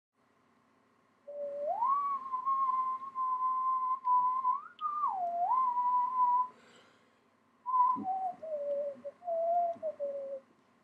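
A person whistling a slow tune: a low note swoops up about an octave to a long held high note, dips and climbs back, then after a pause falls away in steps. There are a few faint handling clicks.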